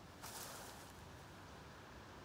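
Faint, steady outdoor background hiss, starting just after the beginning, with nothing else standing out.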